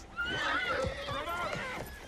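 A horse whinnying: one long, wavering call lasting about a second and a half, with horses' hoofbeats underneath.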